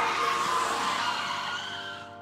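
Motorcycle crash sound effect: a loud engine and skid noise laid over the band's held closing chord, fading away over the two seconds.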